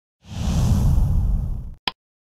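Logo-intro whoosh sound effect with a heavy low rumble, lasting about a second and a half, ending in a single short sharp pop.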